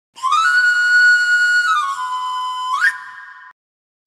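Whistle-like intro jingle of a news channel's logo: one pitched tone glides up and holds, steps down about two seconds in, then sweeps sharply up, holds briefly and cuts off.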